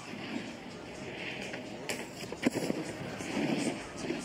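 Snowboard scraping and sliding over hard snow as the rider rides the slopestyle course. There is a sharp knock about two and a half seconds in.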